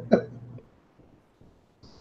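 A brief vocal sound from a man right at the start, trailing off at the end of his joke, then near silence with a short, soft hiss near the end.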